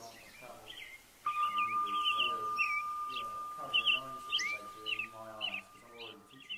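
Rapid bird-like twittering chirps, with a steady high tone that starts abruptly about a second in and holds, over a man's faint speech.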